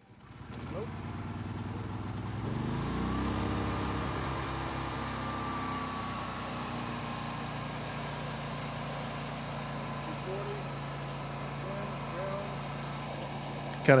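Harbor Freight Predator 9500 inverter generator starting up. Its engine speed climbs over the first couple of seconds, then it settles into a steady run.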